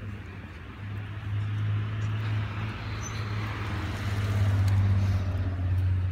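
A car driving toward the microphone along the street, its engine and tyre noise swelling to its loudest about five seconds in, over a steady low hum.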